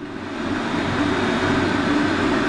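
Steady rushing whir of a running fan, with a low, constant electrical hum underneath.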